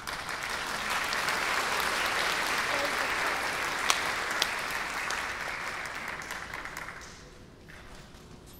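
Audience applauding at the end of a piece, rising just after the music stops and dying away about seven seconds in, with two louder single claps near the middle.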